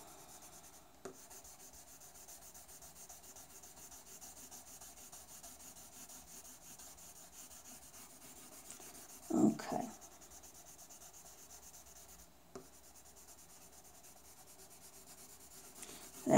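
Light green coloured pencil shading on paper in quick left-to-right strokes: a faint, steady scratchy rubbing. A brief vocal sound breaks in about halfway through, and there are two small clicks.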